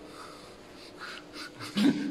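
A person's breathy sounds, a few short hisses, then a short voice sound rising in pitch near the end, the loudest moment.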